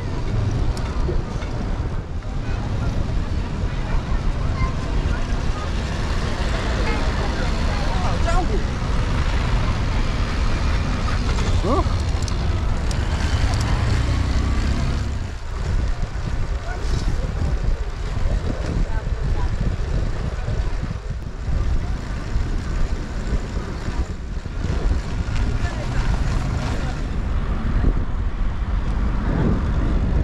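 Wind and road noise on the camera microphone of a moving electric trike, a steady low rumble, with people's voices along the street behind it.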